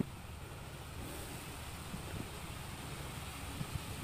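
Quiet outdoor background: a steady low rumble and faint hiss, with a few soft ticks.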